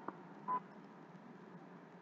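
A faint click, then about half a second in one short, high electronic beep, over a steady low hum.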